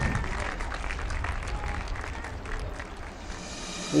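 Audience applause from a concert hall, fading gradually.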